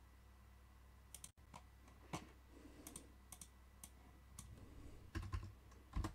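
Faint, scattered clicking from computer use, about eight or nine sharp clicks spaced irregularly, over a low steady hum, with a soft low thump near the end.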